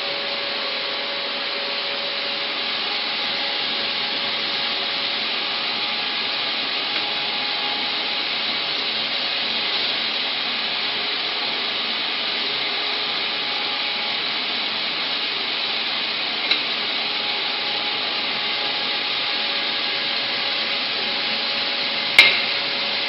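Crystal inner laser engraving machine running steadily: an even, unchanging mechanical hiss and hum from its fans and scanning head.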